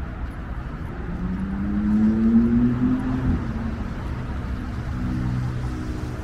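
Low rumble of road traffic, with a vehicle engine whose hum rises in pitch and grows louder over about two seconds as it accelerates past, then settles into a lower steady drone.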